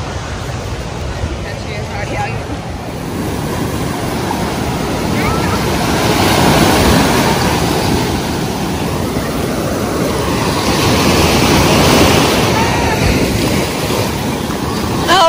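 Ocean surf breaking and washing up the sandy shore. The rush of the waves swells about six seconds in and again near the end.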